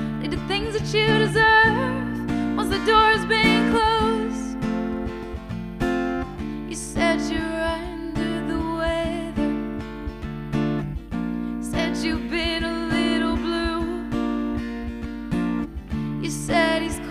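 A woman singing live to her own strummed acoustic guitar. The voice pauses briefly twice, leaving the guitar chords alone.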